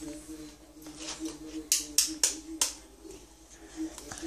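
A few sharp clicks and taps of kitchen handling at the stove, four in quick succession about two seconds in, over a faint steady hum.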